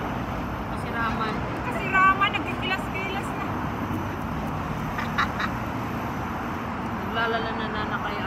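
Short snatches of indistinct women's chatter over a steady background hum of city traffic, with a few light clicks about five seconds in.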